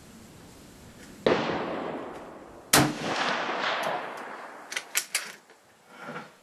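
Two rifle shots about a second and a half apart, each followed by a long echoing tail under the range roof; one is the Japanese Type 99 Arisaka bolt-action rifle in 7.7×58mm firing. A few quick, sharp metallic clicks follow near the end, the bolt being worked.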